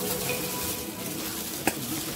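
Plastic bags crinkling and rustling as hands handle a zip-top bag of potato chips inside a thin plastic grocery bag, with one sharp click near the end.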